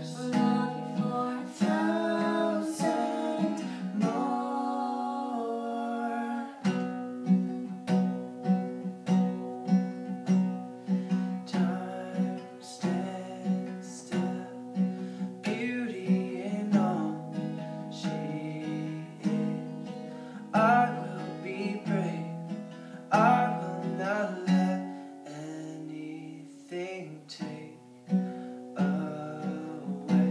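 Acoustic guitar strummed in a slow, steady rhythm, accompanying a man and a woman singing a ballad duet.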